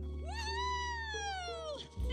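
One long, high-pitched cry that rises and then slides down in pitch, over soft background music.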